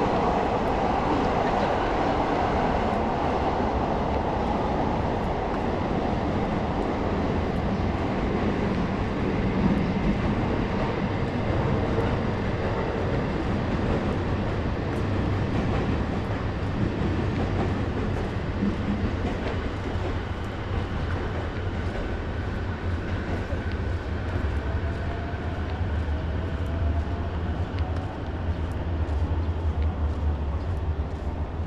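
A train running past on the tracks: a steady rumble of wheels on rail, with a deeper rumble building in the last few seconds.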